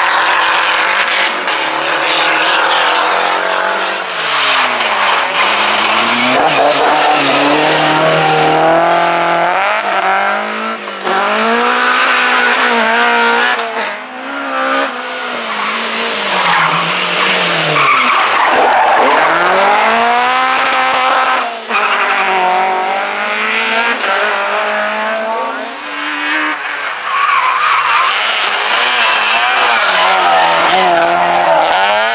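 Rally cars driven flat out past the camera, first a Renault 5 GT Turbo, then a BMW M3 E30. The engine notes drop sharply as they lift off and brake, then climb again through the gears, several times over. Tyre squeal and skidding noise run under the engines.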